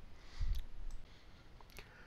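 A few sharp computer mouse clicks, with a soft low thump about half a second in.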